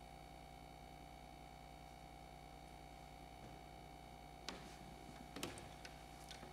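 Near silence: room tone with a steady faint hum, broken by two faint clicks near the end.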